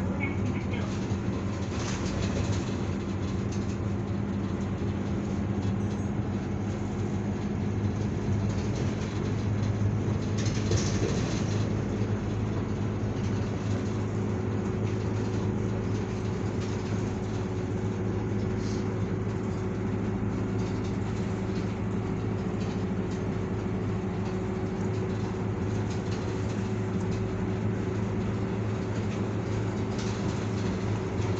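Cabin noise inside a moving route bus: the engine's steady low drone and hum mixed with tyre and road rumble, with a brief louder rush about ten seconds in.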